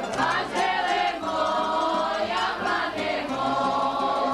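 A group of voices singing a folk song together in long held notes that move from pitch to pitch.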